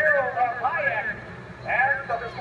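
Mostly speech: a man's voice calling the race.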